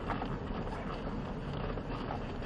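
Ford Raptor pickup rolling slowly over a dirt trail, heard inside the cab: a steady low rumble of engine and tyres on gravel.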